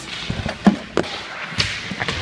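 A few sharp knocks and thumps over a noisy background, the clearest about a third of the way in and at the midpoint.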